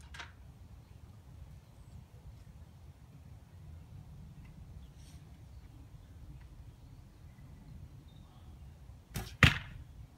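A 45 lb 61-inch Indian recurve bow shooting a cedar arrow near the end. There is a short snap as the string is released, and about a quarter second later a much louder sharp hit with a brief ring as the arrow strikes the target.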